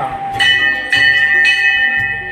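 Temple bell struck repeatedly, about twice a second, each stroke ringing on, over a low rhythmic pulse.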